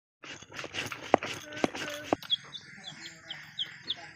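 A stone roller knocking and scraping on a stone grinding slab, with a short call over it. From about halfway in, a chick peeping over and over in short, high, falling notes.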